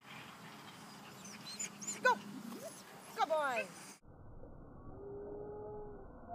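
A dog whining: short high-pitched whimpers about two seconds in, then a quick run of falling whines a second later.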